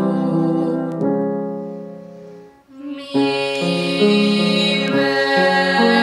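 A girl and an adult woman singing a vocal warm-up exercise in held notes, with a grand piano playing along. The sound fades away to a short break a little over two seconds in, and the next phrase starts at about three seconds.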